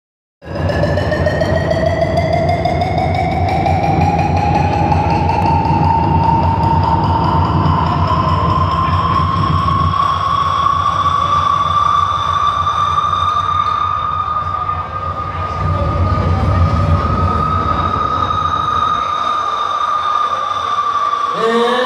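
Show soundtrack over a nightclub sound system: one long sustained electronic tone that slowly rises in pitch, over a low rumbling drone that dips briefly about three-quarters of the way through.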